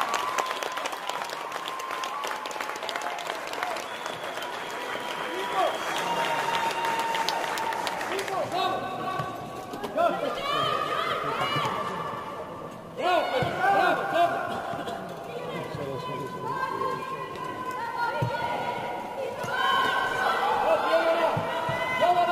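Voices calling and shouting across a football pitch in a large indoor hall: players and touchline voices during open play, with no clear words.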